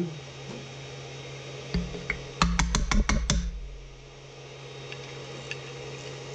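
A quick run of about six sharp clicks and light knocks about halfway through, from the wrench and the just-unscrewed 3D-printer nozzle, which is stuck inside it, being handled. Under it runs a steady low hum.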